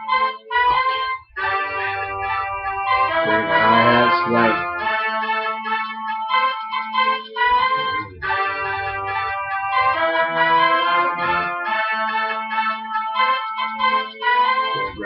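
An instrumental beat made in FL Studio (Fruity Loops) plays back: a sustained melody of held notes over a low bass line. The bass drops out about five seconds in and returns briefly near eight seconds.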